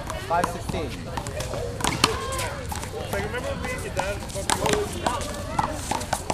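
A one-wall handball rally: the small rubber ball slapping off players' hands, the wall and the concrete court in sharp smacks, the loudest about two seconds in and a quick cluster near the end, over people chatting.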